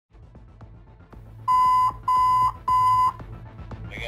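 Three loud electronic alert beeps, each about half a second long at one steady pitch, sounding in quick succession over faint regular ticking and a low hum: radio dispatch alert tones ahead of a fire department dispatch call.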